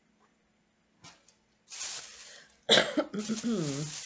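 A woman coughing. A rasping breath about two seconds in leads to a sharp, loud cough near three seconds, which trails off in a voiced tail that bends in pitch.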